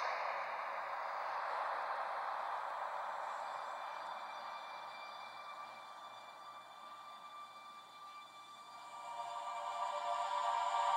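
Cinematic title-card soundtrack: a sudden noisy hit that fades slowly over about eight seconds, then music with sustained tones swelling in near the end.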